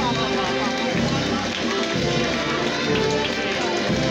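Procession band music playing sustained chords, over a mix of crowd voices.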